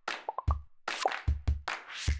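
Intro jingle of punchy deep drum hits mixed with quick pop-and-blip sound effects, a few hits a second.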